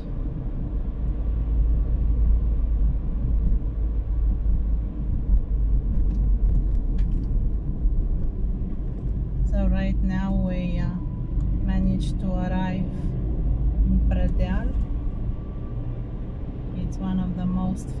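Car driving along a highway, heard from inside the cabin: a steady low rumble of engine and tyres on the road.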